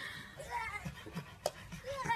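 Soft, indistinct voice sounds, with a single sharp click about one and a half seconds in.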